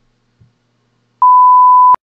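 A single loud, steady electronic beep, one pure tone, starting a little past a second in and cutting off abruptly with a click under a second later.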